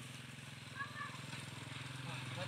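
Motorcycle engine running steadily at idle, a low hum with a fast, even pulse.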